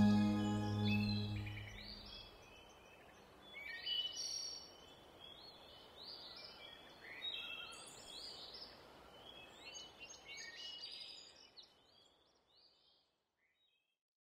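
The last chord of background music fading out over the first two seconds, then birds singing and chirping, fading away to silence near the end.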